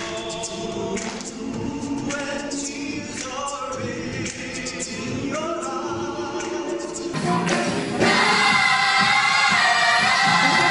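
A small male choir singing together in harmony. About eight seconds in it cuts to a larger gospel choir singing, noticeably louder.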